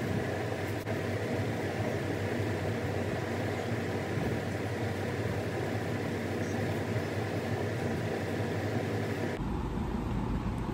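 Steady background noise, like a running fan or air conditioner, with an abrupt change in its tone near the end.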